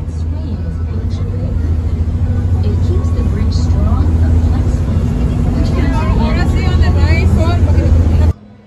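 Tour boat's engine running with a steady low drone that grows louder, over a rush of wind and water. Voices of people on board come in from about halfway through.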